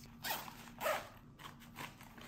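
Three short rasping rustles about half a second apart, from a mosquito head net and a small gear bag being handled and packed, zipper-like in sound.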